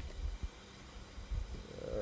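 Faint low rumbles of breath or handling on a desk microphone, with a small click about half a second in. Near the end comes a short pitched hum from the speaker, an 'mm' sound.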